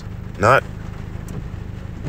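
A single short spoken word about half a second in, over a steady low hum.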